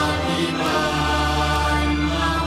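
Thai Buddhist chant sung in unison by a group in the sarabhanya melodic style, with slow, drawn-out held notes over a steady low drone.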